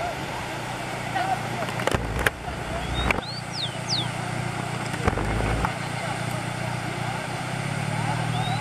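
Water running down a concrete dam spillway as a steady rush. A rufous-collared sparrow (tico-tico) sings its short whistled song, a rising note and two falling slurs, about three seconds in and again near the end. Low rumbling gusts of wind on the microphone come at about two and five seconds.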